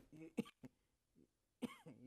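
A man coughing and clearing his throat: a few short bursts in the first second, then a drawn-out voiced sound beginning near the end.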